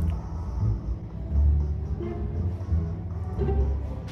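K-pop song playing, with deep bass notes that change pitch every half second or so under a denser upper accompaniment.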